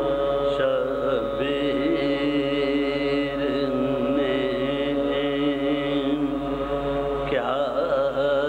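Sozkhwani singing: a solo voice holds long, ornamented notes with wavering pitch, and slides to a new note about seven seconds in.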